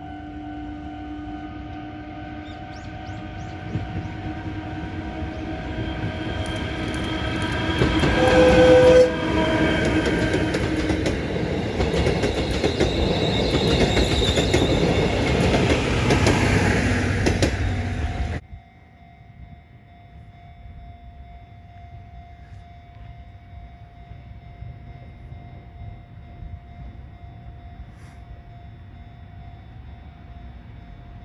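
Chichibu Railway Deki 108 electric locomotive hauling 12-series passenger coaches, growing louder as it approaches and passes. There is a brief horn toot about nine seconds in, and a level-crossing alarm rings steadily underneath. The train noise cuts off suddenly a little past halfway, leaving a fainter steady ringing.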